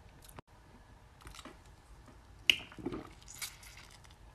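Close mouth sounds of biting into a jelly fruit candy: faint soft squishing, with a sharp click about two and a half seconds in.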